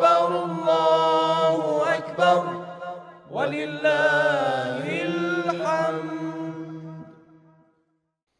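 Intro music: a melodic vocal chant sung in long, drawn-out, gliding phrases over a steady low drone, fading out about seven and a half seconds in.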